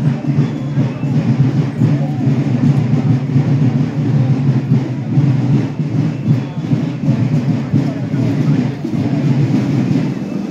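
Marching band music with drumming, mixed with crowd voices, playing continuously at a steady level.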